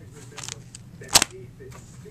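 Plastic binder page of card sleeves being turned: a short rustle, then one sharp plastic snap as the page flips over.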